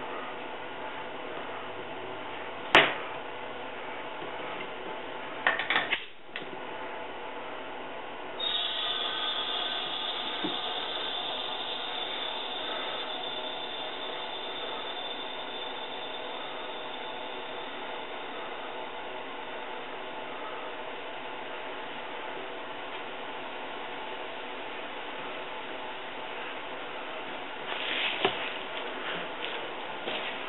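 A sharp metallic click about three seconds in and a short clatter a few seconds later, then a steady hiss of compressed air that starts suddenly about eight seconds in and slowly eases, as air runs into the pressure pot's hose and spray-gun setup.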